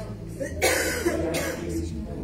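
A person coughing: a loud cough a little over half a second in, then a second, shorter one just after, over a low steady room hum.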